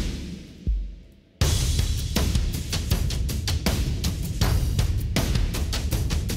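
A drum track playing back through a multiband compressor set to upward expansion in the high band, so each snare hit comes out extra loud in the treble. A few sparse hits open it, then a dense, steady beat comes in about a second and a half in.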